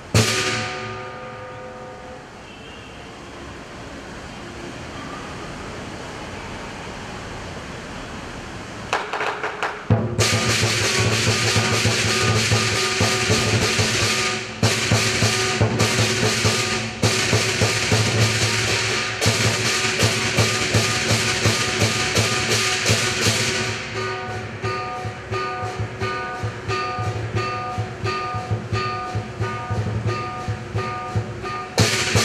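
Lion dance percussion band of drum, gong and cymbals. It opens with a loud crash that rings away into a quieter stretch, then about ten seconds in the full band comes in loud with fast drumming and crashing cymbals, settling near the end into a steady beat with gong and cymbal strikes about twice a second.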